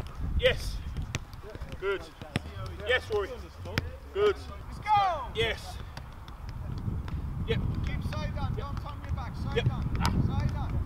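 A football being kicked and juggled on an artificial pitch: repeated sharp thuds of boot on ball, with short shouts and calls from players across the pitch. A low rumbling noise grows in the second half.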